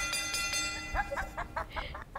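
A ringing, bell-like chime sound effect that fades within the first second, marking the end of the skit. It is followed by a run of quick, short giggles.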